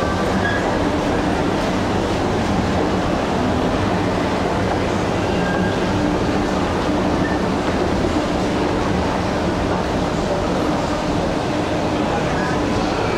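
Steady low mechanical drone of a large indoor shopping-mall atrium, unchanging throughout, with a faint hum in it and faint distant voices.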